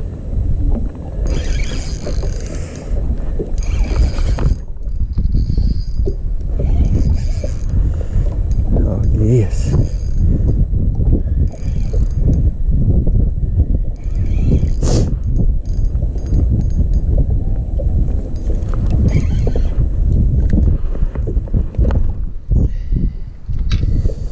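Steady low wind rumble on the microphone over a spinning reel being cranked as a hooked bass is fought to the boat. A few short, sharper rasping noises stand out from the rumble.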